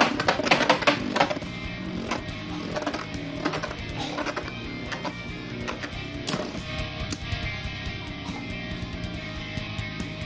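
Background music with guitar over two Beyblade Burst tops spinning in a plastic stadium: a quick run of sharp clicks as they clash in about the first second and a half, then single clicks every second or so as they knock together.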